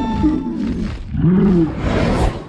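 Animated dragon creature calls from a film trailer's sound design: two short arching roar-like cries about a second apart, the second louder.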